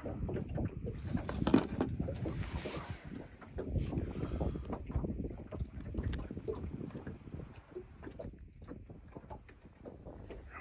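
Wind buffeting the microphone in uneven gusts over open water, with a sharp knock about a second and a half in.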